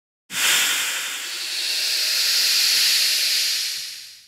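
A loud rushing hiss sound effect for an animated logo reveal: it starts abruptly about a quarter second in, holds steady, and fades out near the end.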